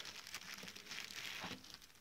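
Faint crinkling and rustling of a thin clear plastic bag as it is pulled off a satin pouch.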